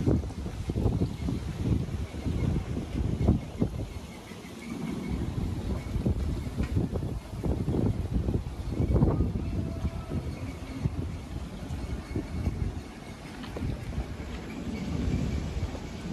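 Wind buffeting the microphone in uneven gusts, a low rumble that swells and eases.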